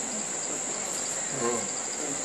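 Steady high-pitched trill of crickets, with a brief faint murmur of a voice about one and a half seconds in.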